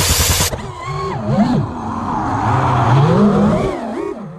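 A sudden burst of loud hiss for about the first half-second, then a small go-kart engine revving, its pitch rising and falling again and again.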